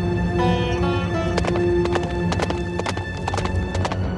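Trailer score with held tones; about a second in, a run of sharp clip-clop knocks comes in, quick and uneven, and stops just before the end.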